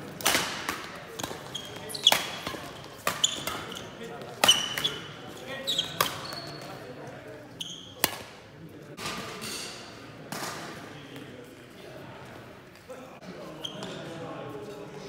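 Badminton rackets striking a shuttlecock in a rally: sharp hits with a brief string ping, roughly one a second for the first six seconds, then only a few scattered hits. The hits echo around a large sports hall.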